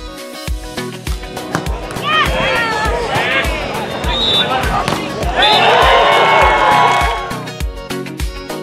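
Upbeat electronic background music with a steady beat. From about two seconds in until near the end, loud excited shouting voices rise over the music.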